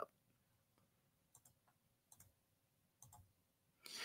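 Near silence, broken by a few faint, short clicks about one and a half, two and three seconds in.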